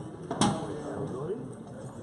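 A padel racket hitting the ball: one sharp pop about half a second in, over the murmur of spectators' chatter.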